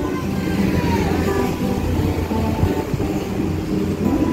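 Road traffic passing close by with a low rumble, over a few faint acoustic guitar notes.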